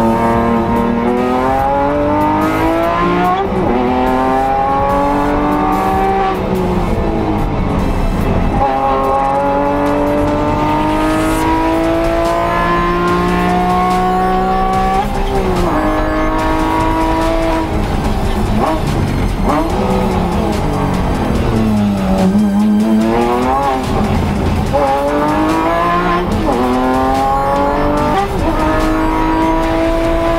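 Porsche 911 (991) race car's flat-six engine, heard from inside the cockpit at speed. It revs up through the gears in repeated climbs, each broken off by a quick upshift, and at times falls away under braking and downshifts before picking up again.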